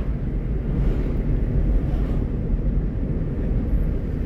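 Steady low rumble of a moving vehicle's engine and road noise, heard from inside the cabin while driving.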